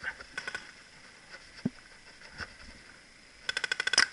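Paintball marker firing in rapid strings of pops: a short burst of about four shots just after the start, then a faster, louder burst of about eight shots in the last half-second.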